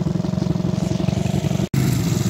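Small four-wheeler engine running steadily with a fast even pulse. The sound cuts out for an instant near the end, then the engine carries on.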